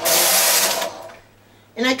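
Carriage of a Singer 155 flatbed knitting machine pushed across the needle bed to knit one row. It is a steady sliding noise lasting about a second, then fading out.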